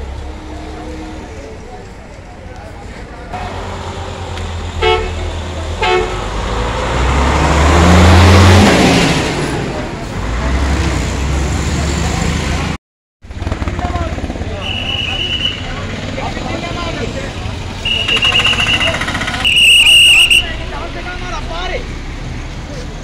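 A large vehicle's engine revs up and passes close by, loudest about eight seconds in. Later a car horn sounds three times, the last honk the loudest, over crowd voices and street traffic.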